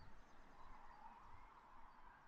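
Near silence: faint, steady outdoor background hiss.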